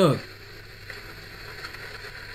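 Faint, steady car cabin noise from a moving car, engine and tyres on rough ground, heard through the played clip after a man's short word.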